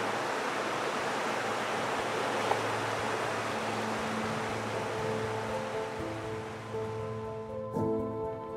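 Rushing river water running over rocks, thinning out in the last few seconds as background music with long held notes fades in.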